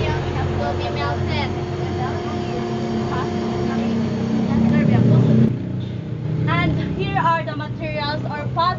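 A motor or engine running with a steady low hum under faint voices; it swells just before cutting off suddenly about five and a half seconds in, and clear speech follows.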